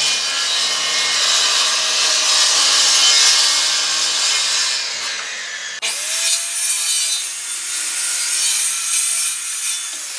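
Corded circular saw running and cutting a long straight line through a wooden sheet, a loud, steady, hissing cut. About six seconds in the sound breaks off sharply and picks up again at once.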